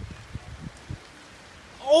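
Faint outdoor noise with a few soft low bumps, then near the end a loud, high-pitched startled cry of "Oh!" breaks in, a reaction to a close lightning strike.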